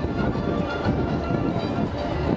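Street parade ambience: steady low rumble from the giant dog puppet's wheeled rig moving along, mixed with crowd chatter and faint music.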